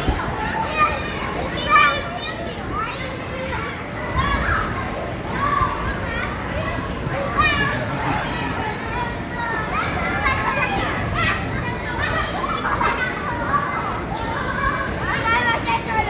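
Many children shouting and laughing together while playing in an inflatable bounce house: a steady din of overlapping young voices.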